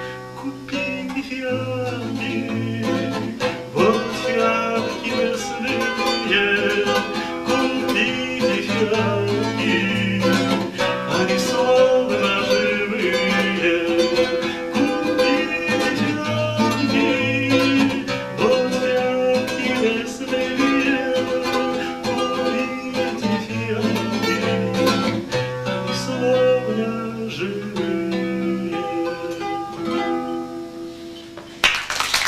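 Classical acoustic guitar played solo: an instrumental passage of plucked melody notes over a moving bass line, at a steady level.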